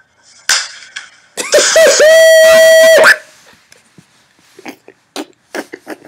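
A sharp smack of a hand on a man's bald head, followed by a loud, high-pitched scream that bends, then holds one pitch for about a second and a half and cuts off abruptly.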